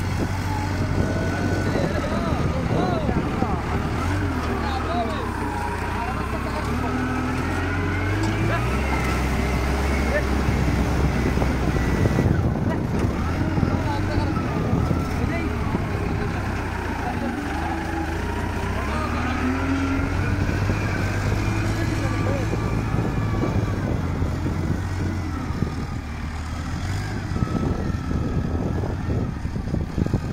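TCM 815 wheel loader's diesel engine running under working load, its pitch stepping up and down as the revs change, with a wavering whine rising and falling over it.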